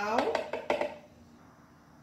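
A few quick light clicks and knocks against the plastic jar of a Philco blender in the first second, as salt is tipped in.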